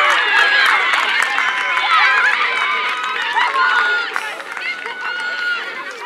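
Many voices shouting and cheering in celebration of a goal, overlapping high-pitched shouts, loudest at first and easing off over the seconds.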